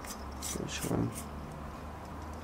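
Faint clicks and scrapes of small parts being handled as a plastic bicycle valve-cap LED light is screwed together with button-cell batteries inside, over a steady low hum.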